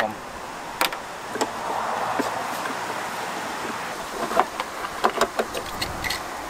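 Car wiring harness being pulled out of the engine bay by hand: plastic connectors and taped wires clicking and knocking against the bodywork, with a stretch of rustling scraping in the middle.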